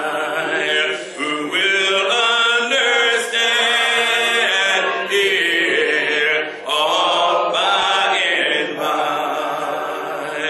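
A man singing unaccompanied in long held notes with a wavering pitch, breaking off briefly every few seconds between phrases.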